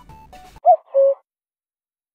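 Faint background music ends. A short two-note sound effect follows, a higher bending note and then a lower steady one, about half a second in all. Then there is silence.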